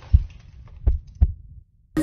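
Intro sound effect under a logo card: three low bass thumps, the last two about a third of a second apart.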